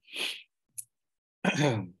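A person's breathy sigh, a faint tick, then a short throat-clear with a voiced, falling tone near the end. The sounds come through a video-call microphone that gates to silence between them.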